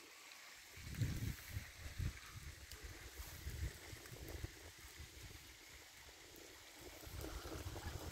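Wind buffeting a phone microphone outdoors: faint, irregular low rumbles in gusts, over a faint steady hiss.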